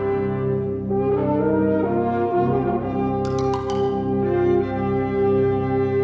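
Fanfare band of brass and saxophones playing sustained, shifting chords with the French horns prominent. A few short, high clicks sound a little after three seconds in.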